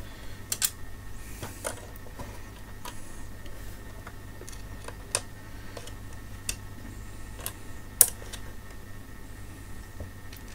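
Scattered sharp clicks and taps of small metal hardware as the old binding posts are worked out of a Fluke 343A DC voltage calibrator's panel by hand. The loudest click comes about eight seconds in, over a steady low hum.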